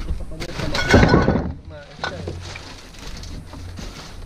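A person's voice briefly, about a second in, followed by fainter scattered clicks and handling noises.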